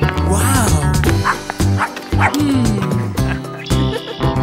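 A small dog yipping and barking several times in quick succession, with a falling whine after, over cheerful background music.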